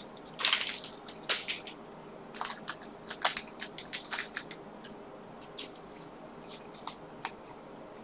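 Foil wrapper of a Pokémon Unbroken Bonds booster pack crinkling as it is opened by hand, then the cards being handled: a scatter of quiet crackles and clicks, busiest in the first half and thinning out towards the end.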